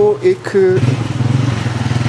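Motorcycle engine running steadily at a low, even note, coming up strongly about half a second in.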